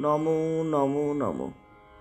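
A woman's reciting voice holding one long, level vowel at the end of a line of Bengali poetry, then sliding down and stopping, over faint steady background music.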